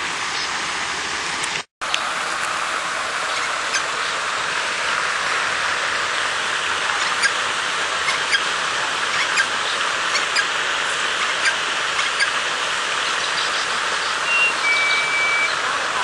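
Steady rush of running water from a garden water feature, cutting out for a moment about two seconds in. Faint short bird chirps sound over it, with a brief high whistle near the end.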